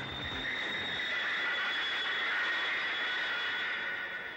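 Subway train sound effect: a steady rushing rumble with a high, drawn-out squeal of wheels on rails, as the train runs below the street.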